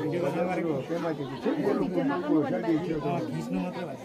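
Speech: men talking, with more than one voice at once.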